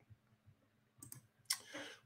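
Faint clicks at a computer, a few light ones about a second in and a sharper one halfway through, as a viewer's comment is brought up on screen.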